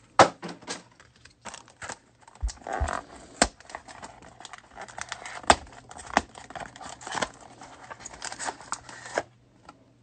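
Trading-card packs being handled: plastic wrappers crinkling and rustling, with sharp taps and clicks as packs are picked up and set down on the table. It runs in uneven bursts and stops about nine seconds in.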